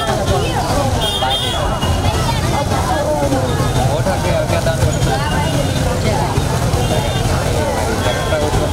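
A woman talking into a handheld microphone over a steady low rumble of street traffic and background chatter.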